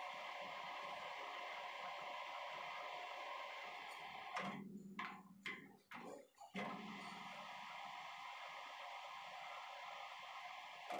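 Manual metal lathe running steadily with a shaft yoke spinning in the chuck. About four seconds in it stops with a few clunks, and about two seconds later it starts again and runs steadily.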